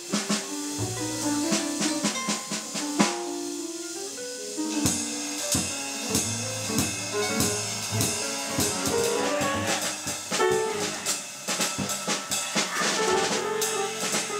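Small jazz group improvising freely: drum kit with busy cymbal and drum strikes, double bass and piano playing overlapping held notes.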